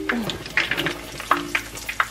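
Cheese-stuffed plantain fritters sizzling and crackling in hot frying oil, with fine irregular pops, while a plastic spatula turns and lifts them in the pan.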